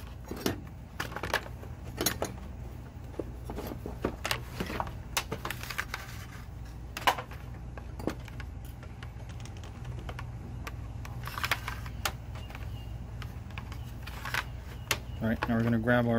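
Irregular plastic clicks and knocks from a black plastic housing and a cable being handled and threaded through it, over a steady low hum.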